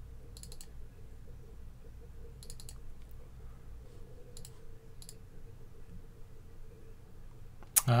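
Short groups of quick clicks at a computer, three or four sharp clicks at a time, coming a few times over a faint steady hum.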